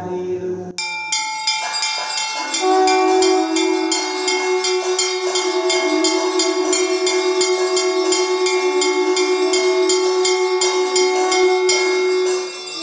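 Temple bells ringing rapidly and continuously during the lamp-waving aarti, starting just under a second in. About two and a half seconds in, a long, steady, horn-like tone joins and is held over the bells.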